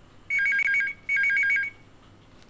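Corded desk telephone's electronic ringer ringing twice, each ring a short burst of a warbling two-tone trill.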